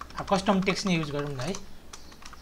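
Typing on a computer keyboard, a few sharp key clicks at the start and again near the end, with a voice talking over it for most of the time.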